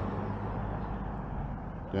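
Low, steady hum of a motor vehicle's engine with faint street noise.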